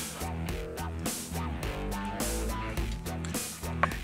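Background music: a guitar-led track with a steady drum beat.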